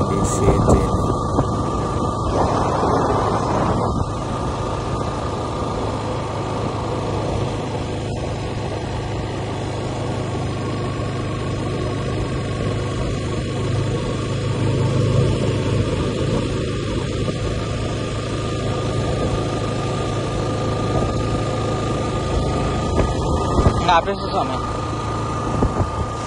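Motorcycle engine running steadily under way with wind noise on the microphone, swelling slightly about halfway through.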